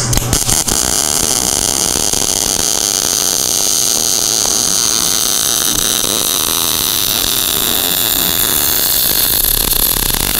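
MIG welding arc burning steadily, a continuous crackling hiss, with a few sputters as the arc strikes at the start. The wire is fed at 300 inches per minute with extra stick-out, reaching down into a deep, narrow joint.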